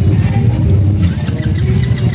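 Small engines of custom minibikes idling close by: a loud, steady low rumble with a rapid pulse.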